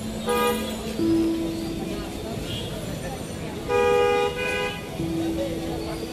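Vehicle horns honking in a busy street over the murmur of a crowd: a short honk just after the start, a longer honk for about a second around four seconds in, and steady lower horn tones held about a second in and again near the end.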